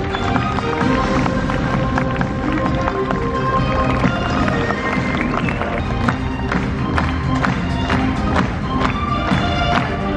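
Music with a steady beat and sharp percussive hits throughout.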